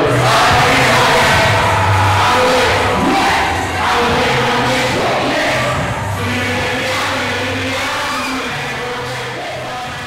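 Live hip-hop performance in a hall: a rap track with a heavy bass line over the sound system, mixed with the voices of a crowd. It slowly gets quieter toward the end.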